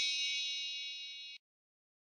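A bright metallic ding, like a struck bell or chime, ringing out and fading, then cutting off abruptly about one and a half seconds in.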